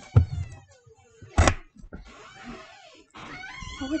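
A pet animal giving high, falling whining cries, with a thump near the start and a sharp knock about a second and a half in.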